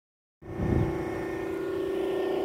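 A steady machine hum with a low rumble underneath, starting about half a second in.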